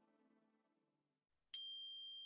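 A single high-pitched chime struck about one and a half seconds in, ringing on as one clear tone that fades slowly, as a meditation bell does to close a hypnosis session. Before it, the last of a faint music bed dies away to near silence.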